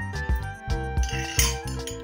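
Background music with held notes over a steady beat.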